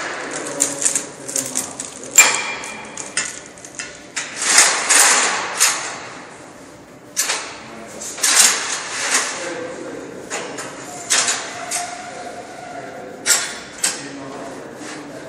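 Steel roller chain clinking and rattling as it is pulled by hand through a packing-machine conveyor: irregular metallic clicks, the sharpest about two seconds in, with longer rattling runs as the chain slides through.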